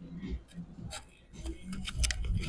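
Quiet bowling-alley background: faint scattered clicks and ticks with a faint murmur of voices.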